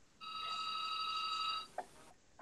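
A single electronic tone of several pitches sounding together, held steady for about a second and a half before cutting off, followed by a small click.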